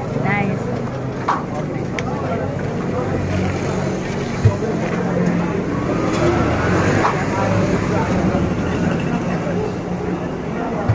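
Voices talking over a steady low hum of road traffic, with one brief knock about halfway through.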